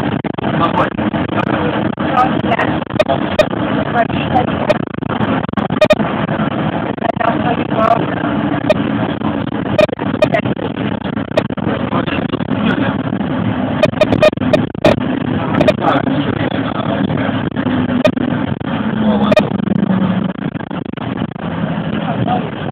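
Inside a moving bus: steady engine and road noise, with many sharp, irregular clicks and knocks as the bus runs over the road surface.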